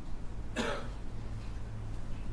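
A single short cough about half a second in, over a steady low hum.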